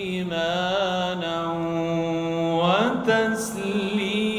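A man's voice reciting the Quran in a melodic, drawn-out style. One long held note with a slight waver at its start, then the voice slides sharply upward near the end and a new phrase begins after a brief hiss.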